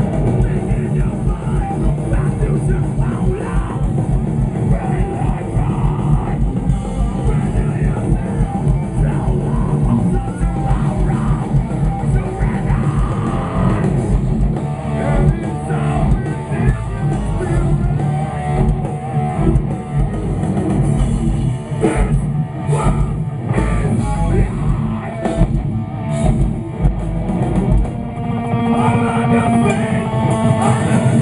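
Heavy metal band playing live through a festival PA, loud and unbroken, with rapid kick drums under distorted guitars.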